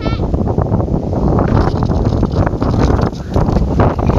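Wind buffeting a phone's microphone: loud, gusty rumbling. A brief high squeak right at the start.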